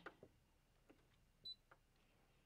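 Near silence, broken by one short, high beep about one and a half seconds in: the Brother ScanNCut cutting machine's touchscreen key beep as a button on its screen is pressed.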